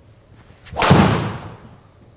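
Titleist TSR3 driver striking a golf ball off a tee: one sharp, loud crack about a second in that dies away over half a second.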